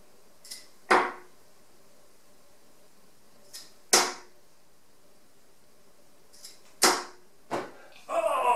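Harrows Dave Chisnall 23 g darts, black and gold coated, thrown one after another into a bristle dartboard. Each lands with a sharp thud, about three seconds apart, and each thud follows a faint sound a moment earlier. A softer knock comes just after the third.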